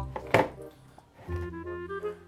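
Background music with sustained notes over a bass line. About a third of a second in, a single sharp knock: the plastic container being set down on the freezer shelf.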